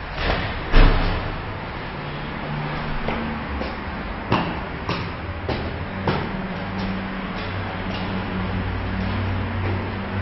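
Footsteps climbing hard stone stairs in an echoing stairwell, a knock at each step. There is a heavy thump about a second in.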